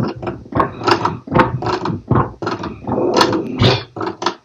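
A record's beat played through a DJ mixer, cut in and out by quick crossfader movements into short bursts, about two or three a second.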